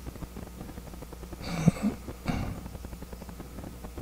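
Quiet room tone picked up through a handheld microphone: a steady low hum, with a faint short sound about one and a half seconds in and another just after two seconds.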